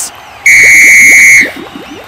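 A referee's whistle blown once, a single steady shrill blast of about a second, calling a foul.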